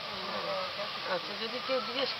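An insect buzzing, its pitch wavering up and down.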